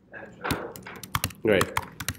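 Typing on a computer keyboard: a quick run of about a dozen keystrokes as a line of code is typed.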